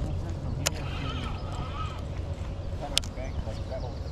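Baitcasting reel clicking twice as a big swimbait is cast and the reel re-engaged, once early and once near the end. Under it is a steady low rumble of river current and wind.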